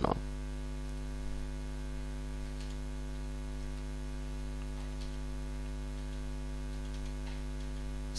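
Steady electrical mains hum on the recording, an unchanging low buzz with many overtones, with a few faint clicks.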